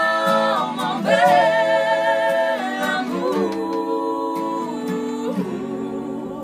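Voices, women's among them, singing long held notes in close harmony. The notes step down in pitch in the second half. An acoustic guitar plays softly underneath.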